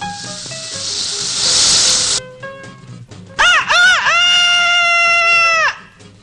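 A hissing whoosh swells for about two seconds and cuts off. Then a man's cartoon-gibberish voice gives two quick swooping cries and a long, high, held shout that breaks off shortly before the end, over faint background music.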